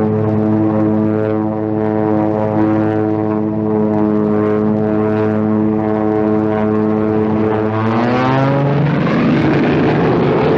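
Propeller-driven biplane engine droning steadily in flight, then rising in pitch and turning rougher about eight seconds in.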